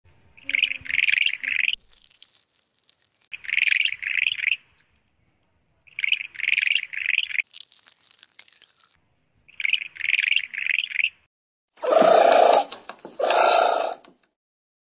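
A chirping call repeated four times, each a run of three or four quick high notes, followed near the end by two louder, harsher sounds of under a second each.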